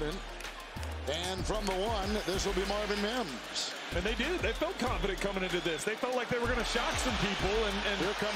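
Play-by-play commentary from a TV football broadcast, heard quietly: a man's voice talking steadily over a low hum.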